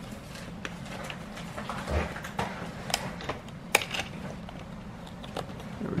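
Small scattered clicks and taps of a circuit board and plastic parts being handled and pressed down under the plastic retaining tabs of a digital piano's key frame, with one sharper click a little before four seconds in.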